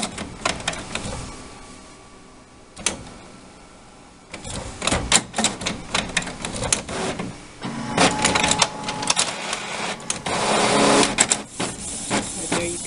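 Canon Pixma MX922 all-in-one working through a copy job: scanner and paper-feed mechanisms clicking and whirring, with a quieter stretch about two seconds in and busy clicking from about four seconds on. The printer is running normally now that its B200 printhead error has cleared.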